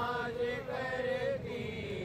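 Men chanting an Islamic devotional recitation (naat sharif), drawing out long, wavering melodic notes of about a second each.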